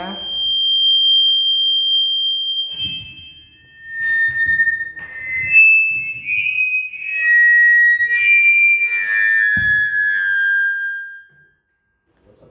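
Microphone feedback through a PA: loud, sustained squealing tones that hold a pitch and then jump to new ones, sometimes two or three at once, with low thuds beneath. It cuts off suddenly near the end.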